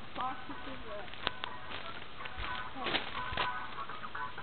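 Faint, distant voices talking, with a few light knocks or clicks.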